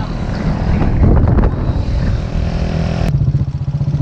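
Motorcycle engine running at road speed with air rushing over the microphone. About three seconds in, the sound changes abruptly to a steadier, lower engine hum.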